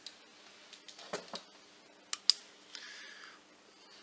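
A few small sharp clicks and knocks of switches and handling as the room light goes off and a black light comes on, the sharpest about two seconds in, followed by a short rustle.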